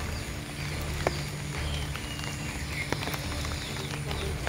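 Faint outdoor ambience: a steady low hum with scattered small clicks and a few faint short high chirps.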